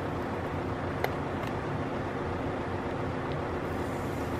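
Steady background hiss and low rumble, with a couple of light plastic clicks about a second in as the clear protective film on a small plastic speaker is handled and peeled.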